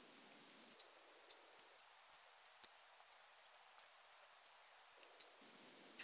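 Near silence broken by faint, scattered small clicks: pliers squeezing a yarn-wrapped bamboo skewer stem along its length, the skewer cracking slightly at each grip so that the stem can be bent into a curve.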